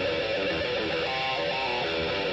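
Heavy metal song from a 1980s demo tape: guitar playing a run of sustained notes, with no drum hits in these seconds.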